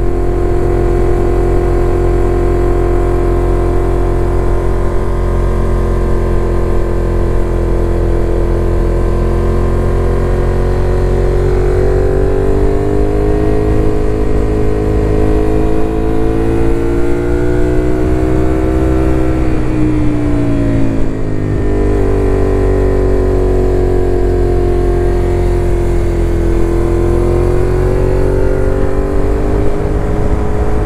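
Suzuki Gladius 400 V-twin engine heard from the saddle while riding, with wind noise on the microphone. The engine holds a steady pitch at first, then rises and falls with the throttle. About two-thirds in, the pitch drops sharply for a moment and then climbs again.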